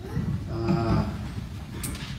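A man's voice making a low, drawn-out vocal sound for about half a second, followed near the end by a couple of sharp clicks.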